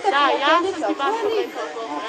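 People talking in high-pitched voices, speech that is not clearly made out.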